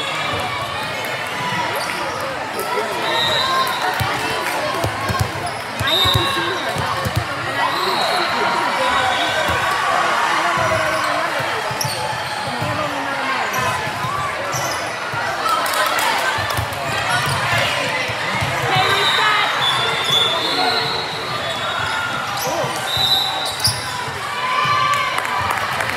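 Volleyball match play in an echoing gym: many voices chattering and calling out, sneakers squeaking on the court floor again and again, and the ball being struck and bouncing now and then.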